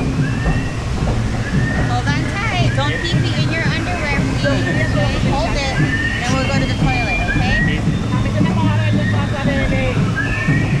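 Voices of other raft riders chattering over a steady low hum and water sloshing around a river-rapids raft.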